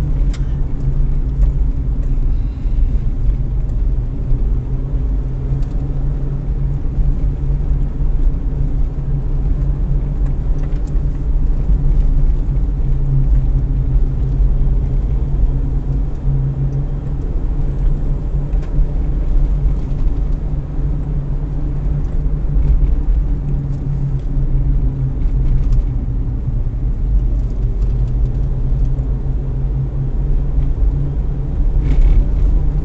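Toyota Rush SUV driving at speed, its engine and tyre noise heard from inside the cabin as a steady low rumble.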